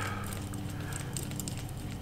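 Quiet room tone with a steady low hum and a few faint small ticks as an idle mixture screw is turned out of a carburetor by hand.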